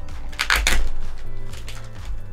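Plastic packaging bag crinkling as hands unwrap it, loudest about half a second in, over background music with a steady bass.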